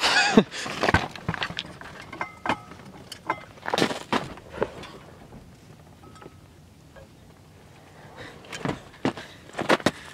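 Scattered clicks, taps and knocks of plastic and metal as a dome light is worked out of a pickup cab's headliner with screwdrivers, going quieter in the middle and picking up again near the end.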